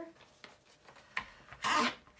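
A cloth rubbed briskly over a plastic paint palette to wipe out leftover paint that was not rinsed out: a brief scrape about a second in, then a short, louder rubbing stroke near the end.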